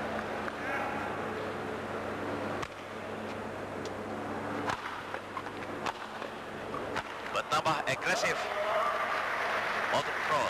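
Badminton rackets striking a shuttlecock in a rally, a few sharp hits about a second apart with a quick flurry of clicks near the end, over a steady murmur of crowd voices in the hall.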